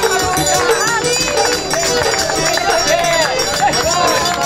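Live festive music with a steady percussion beat, with several voices shouting and singing over it.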